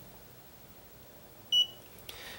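Klein Tools digital clamp meter giving one short, high beep about one and a half seconds in as it is switched on at its rotary dial, over faint room tone.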